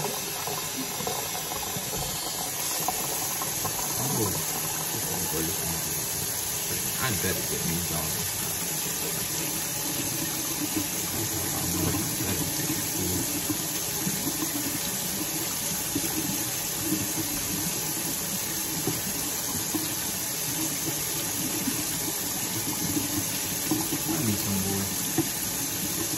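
Kitchen sink faucet running steadily.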